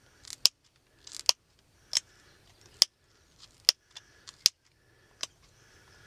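Flint arrowhead being pressure-flaked with an antler tine: about eight sharp clicks at uneven intervals as small chips snap off one side of the point, with a few softer scrapes of antler on stone between them.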